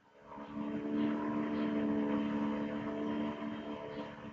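A steady mechanical hum made of several steady tones, swelling in just after the start and fading near the end.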